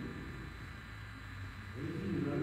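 Room tone with a low, steady electrical hum from the microphone and recording system, in a pause between a man's speech. His voice starts again near the end.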